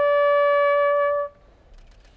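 Solo trumpet playing a slow ceremonial call: one long held note that stops a little over a second in, followed by a pause before the next phrase.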